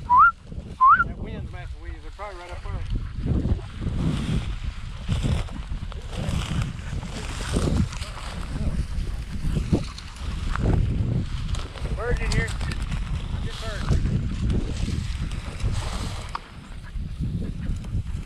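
Footsteps swishing and crunching through tall dry prairie grass, close to a low-mounted camera, with wind buffeting the microphone.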